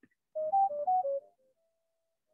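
Companion App sync tones: a quick run of about eight short pure beeps jumping among a few pitches, ending in a faint held note. The tone sequence carries the configuration profile to an AudioMoth recorder.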